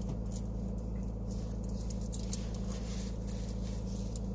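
Steady low hum inside a parked car's cabin, with faint, scattered light ticks and one slightly louder tick a little past halfway.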